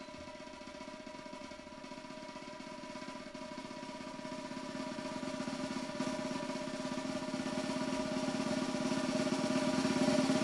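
A live quartet of keyboard, violin, electric bass and drums plays sustained, held notes that swell steadily louder in a gradual crescendo.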